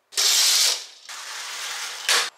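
Sliding glass balcony door being slid along its track, loud for about half a second, then quieter for about a second.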